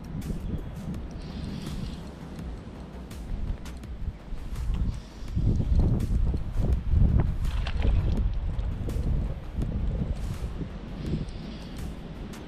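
Low rumbling wind and handling noise on the microphone, with scattered small clicks and knocks. It grows louder in the second half.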